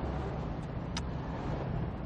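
Steady low rumble of a car's engine and road noise while driving, with one short click about halfway through.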